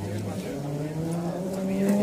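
A rally car's engine accelerating as it approaches. It changes gear about half a second in, and its note then rises steadily and grows louder.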